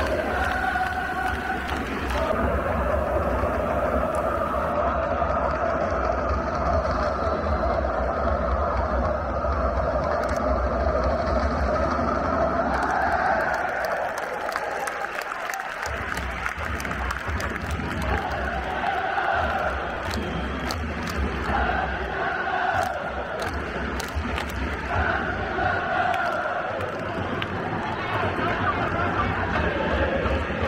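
A large stand of football supporters singing a chant together, with their voices held on long notes that change every few seconds over the general din of the crowd.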